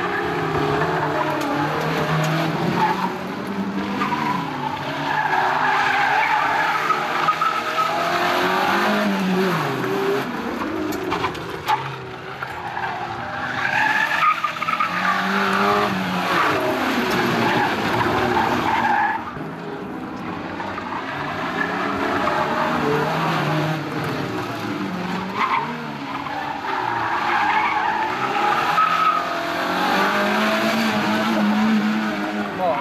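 Small hatchback slalom car's engine revving up and down again and again as the car slides around, its tyres squealing and skidding on dusty asphalt.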